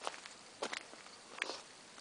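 Three soft footsteps on dirt, less than a second apart.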